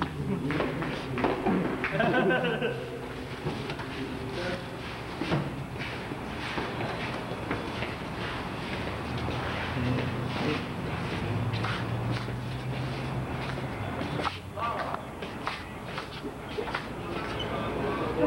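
Indistinct chatter from several young people moving through a building, with footsteps and scattered knocks and thumps.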